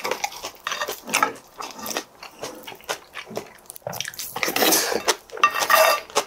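Close-miked eating sounds: wet chewing of bibimbap, with a wooden spoon clicking and scraping against a ceramic bowl in quick, irregular bursts, and a brief squeaky scrape near the end.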